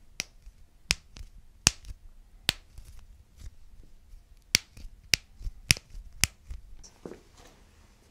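Knuckles and finger joints being cracked by hand close to the microphone: a series of about eight sharp, separate pops at uneven intervals.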